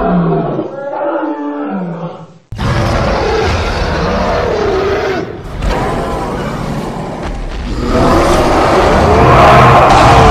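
Big-cat-like roaring and growling sound effects for a cartoon panther-man character: a falling growl, a sudden cut a couple of seconds in, then a long rough roar that builds to its loudest near the end.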